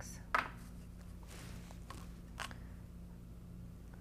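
Small handling sounds of a watercolour paint tube and a plastic palette as paint is put out and a brush goes in: a sharp click about a third of a second in, a soft scraping noise around a second and a half, and another click near two and a half seconds, over a faint steady room hum.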